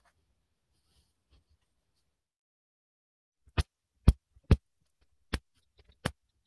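Framing nailer firing nails through a cement siding panel: a series of four sharp, loud shots within about two seconds, starting about halfway in, with a fifth at the very end.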